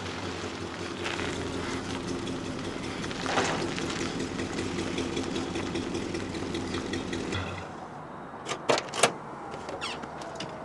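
Late-1960s Cadillac's V8 engine idling steadily, stopping about seven and a half seconds in. A few sharp knocks follow near the end.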